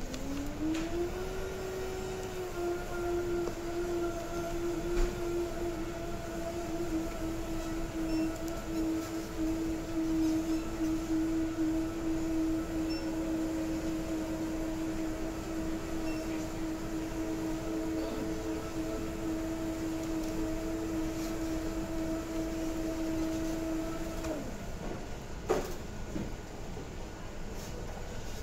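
A machine hum, like an electric motor: it rises in pitch as it spins up over the first second or so, then holds one steady tone for a little over twenty seconds before winding down. A single sharp click comes shortly after it stops.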